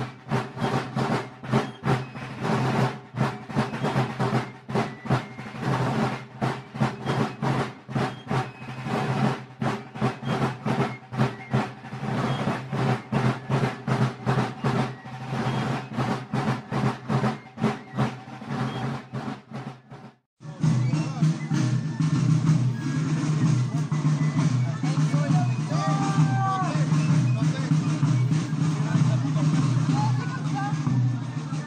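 Marching drums beating a quick, regular march with a piping tune over them, as from a folk-march drum and fife corps. About twenty seconds in the sound drops out briefly and a fuller, steadier band sound with voices takes over.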